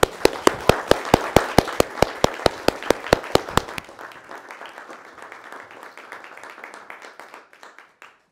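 Wedding guests applauding in a hall: sharp claps from one close clapper, about five a second, stand out over the room's applause and stop about four seconds in, and the rest of the applause dies away near the end.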